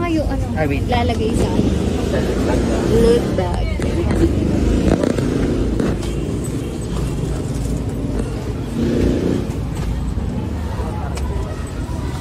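Indistinct voices in the background over a steady low rumble.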